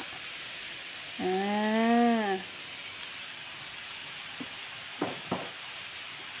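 Snow peas, shrimp and minced pork sizzling steadily in a hot steel wok. About a second in, a long drawn-out hum of the cook's voice is heard over the sizzle.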